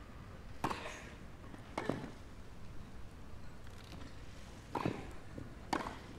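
Tennis racket striking the ball during a rally on a grass court: four sharp strikes, two in the first two seconds and two near the end, with quiet between.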